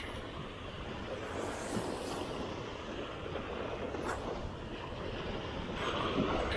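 Steady rush of wind on the microphone and small waves breaking and washing up the sand at the water's edge, with a couple of faint clicks.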